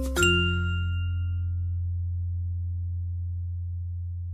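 Background music: a bell-like chord struck just after the start rings out and fades over about a second and a half, above a held low bass note.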